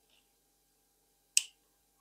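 Near silence broken by one short, sharp click about a second and a half in.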